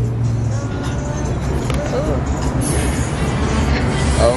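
Busy outdoor street ambience: a steady low hum with background music, traffic and faint distant voices.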